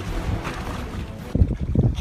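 Wind blowing across the microphone on an open boat at sea, a steady rush that turns into heavier, irregular low buffeting about one and a half seconds in.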